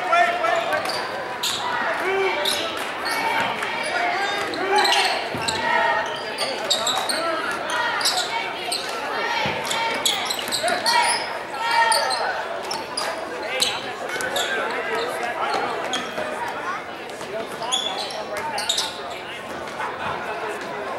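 A basketball bouncing on a hardwood gym floor during play, with many short sharp strikes, over spectators' voices echoing in a large gym.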